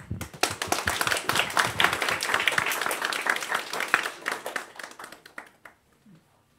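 A small group clapping in a room, the applause thinning and dying away after about five seconds.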